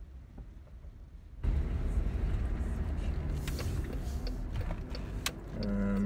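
Car cabin with a low engine and road hum, then about a second and a half in a sudden jump to much louder road and outside noise as a power window opens. A few sharp clicks come near the end.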